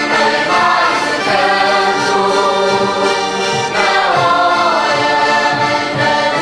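Azorean carnival bailinho music: voices singing together, accompanied by guitars and an accordion.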